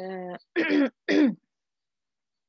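A woman clearing her throat twice in quick succession, two short voiced bursts about half a second apart.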